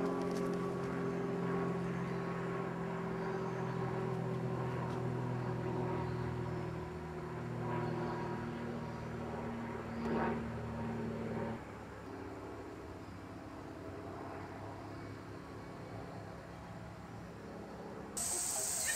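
A motor running steadily with a low hum of several held tones, which stops abruptly about eleven seconds in, leaving a fainter background hum.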